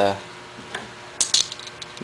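A few light metallic clinks and clatters of a hand tool being handled: one click a little under a second in, then a quick cluster of sharp clinks with a few smaller ticks after.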